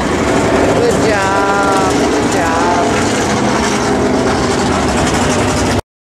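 Dirt-track modified race car engines running, with a public-address announcer's voice over them about a second in and again shortly after; the sound cuts off suddenly near the end.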